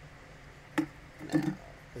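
Small parts of a hobby motor and its mount clicking together in the hands as a screw is fitted: one sharp click a little under a second in, then a short cluster of clicks about half a second later.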